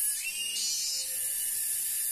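Cicadas buzzing high and steady, with a second, lower buzz coming in shortly after the start and stopping about a second in.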